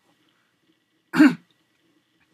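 A man's single short, loud vocal burst about a second in.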